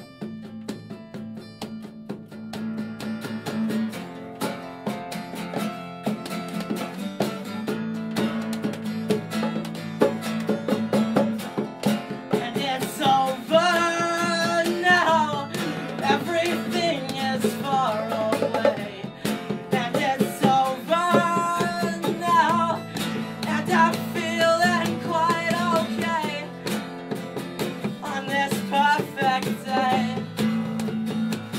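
Live acoustic performance: two acoustic guitars strummed and a pair of bongos played by hand. A man's voice starts singing about twelve seconds in.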